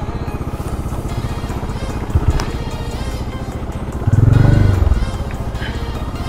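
Motorcycle engine running at low speed over a rough dirt road, its firing pulses steady throughout. About four seconds in, an oncoming car passes close by and the sound briefly grows louder, rising and falling in pitch.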